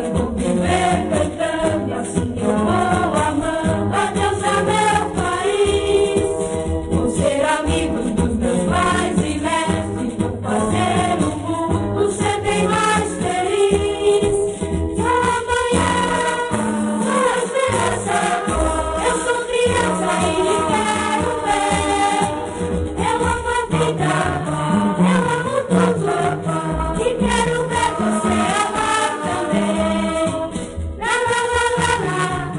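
Music: a choir singing a religious song with instrumental accompaniment, continuing without a break.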